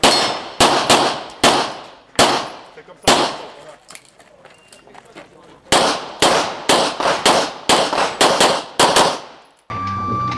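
Pistol shots fired in an IPSC stage, each with a short ringing echo. There are about six spaced shots in the first three seconds, a pause of about two and a half seconds, then a fast string of about eleven shots. The sound cuts off abruptly just before the end.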